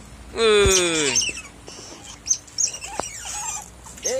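Young otter pup calling: one loud squeal that falls in pitch about half a second in, followed by a few faint high chirps.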